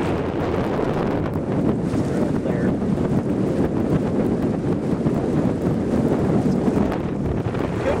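Wind buffeting the microphone in a steady, rough rush, with water noise from a boat on open water underneath.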